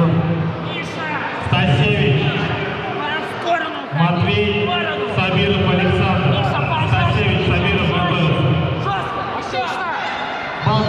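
Coaches and spectators shouting over one another across a large sports hall.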